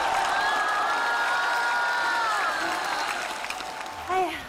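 Theatre audience applauding, with a few held pitched notes over the clapping that dip and stop about two and a half seconds in.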